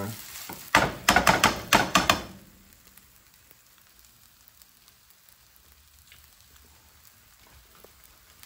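Fried rice sizzling in a skillet as it is tossed with metal tongs. About a second in comes a quick run of sharp clatters of the tongs against the pan, then the sizzle dies down to a faint hiss, the heat having just been turned off.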